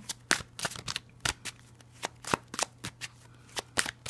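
A Spirit Song tarot deck being shuffled by hand: a run of irregular, quick card snaps and taps.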